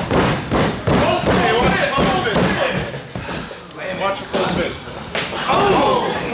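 Several heavy thuds of wrestlers' bodies hitting the ring canvas, with voices talking throughout.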